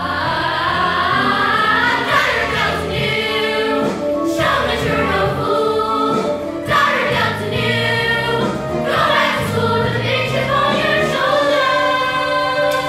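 A chorus of young girls singing a musical-theatre number with instrumental accompaniment, holding long notes.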